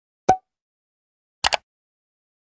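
Animated like-button sound effects: a short pop about a third of a second in, then a quick double click like a mouse click about a second and a half in.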